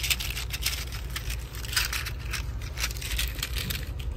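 Seashells in a net mesh bag clinking and rattling against each other as the bag is squeezed and jiggled in the hand, a dense run of small clicks.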